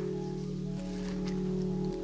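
Quiet background music of soft, sustained held notes, the pitch shifting slightly about a second in and again near the end.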